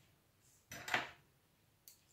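A metal spoon scraping against a dish once, about a second in, then a short click near the end.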